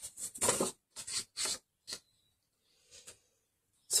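Paper being cut on a deckle-edge guillotine paper trimmer and handled: several short, crisp rustling strokes in the first second and a half, then a few fainter ones.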